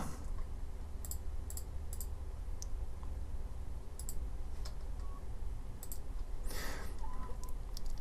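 Computer mouse clicking, a scattering of single and paired clicks, over a steady low hum.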